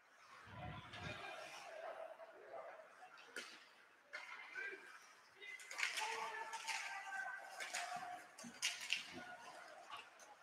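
Faint ice-rink game sounds: distant voices calling out across the rink, with a dull thump about half a second in and a few sharp clacks of sticks and puck during play.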